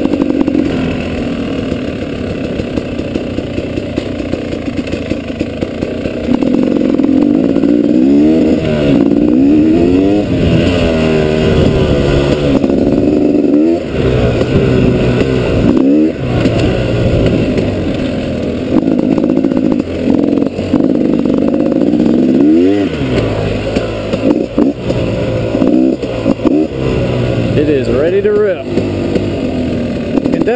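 2012 KTM 250 XC-W single-cylinder two-stroke engine being ridden on a dirt trail, its pitch rising and falling repeatedly with the throttle and gear changes. It is quieter for the first several seconds, then louder, with a few brief dips where the throttle is shut.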